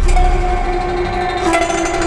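Modular-synth electronic music: a held synth tone with an overtone above it, stepping slightly lower about one and a half seconds in.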